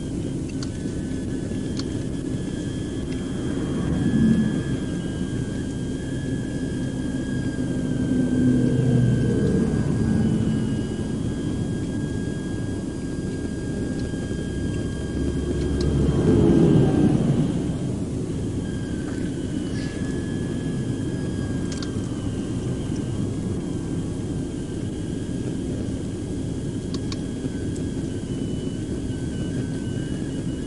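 Steady low vehicle rumble at a roadside traffic stop, with three vehicles passing on the highway, swelling and fading about four, nine and seventeen seconds in. A faint steady high whine runs underneath.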